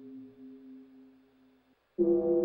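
Synthesized bell note from a Minimoog Model D: the self-oscillating filter is frequency-modulated by the LFO, and a chorus pedal adds a slight warble. The note rings faintly and fades away to nothing shortly before the end, and a new, much louder bell note strikes right at the close.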